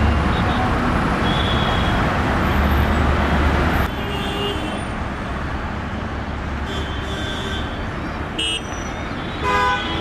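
Heavy city road traffic, with a steady rumble of bus and auto-rickshaw engines and repeated short horn toots from several vehicles. The rumble drops somewhat about four seconds in, and the loudest horn blast comes near the end.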